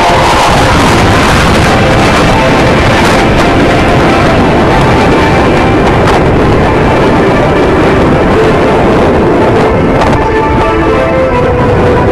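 Loud, steady jet roar from a formation of four Blue Angels F/A-18 Hornets flying overhead, with music playing underneath it.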